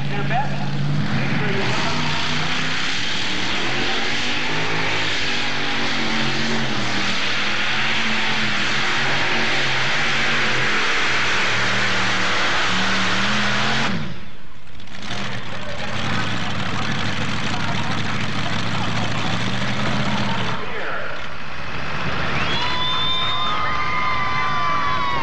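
Multi-engine modified pulling tractor's engines running hard under load as it drags the sled down the track, their pitch rising and falling as the engines labour. Near the end a high whine falls in pitch.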